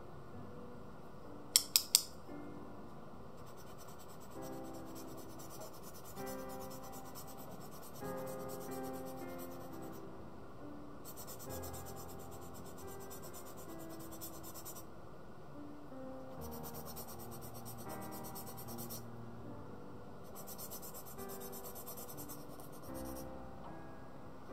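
Pencil being sharpened by hand with a blade: quick scraping strokes shaving off wood and graphite, in bouts of several seconds with short pauses between them. Three sharp clicks come about two seconds in. Background music plays underneath.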